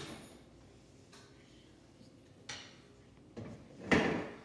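Knocks and clatter of things being handled and set down in a kitchen, a few separate ones, with a loud sharp knock just before the end.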